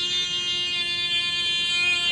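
A man singing one long held note, steady in pitch.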